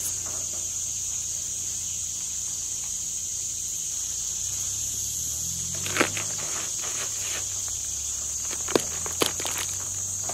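Steady high-pitched chirring of insects. A few short cracks come as a watermelon's rind and flesh are pried apart by hand, one about six seconds in and two more near the end.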